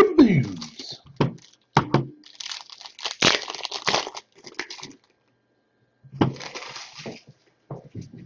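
Foil wrapper of a Score football card pack crinkling and tearing open: a few sharp crackles, then two spells of dense crinkling, the second about six seconds in. A short falling pitched sound comes at the very start.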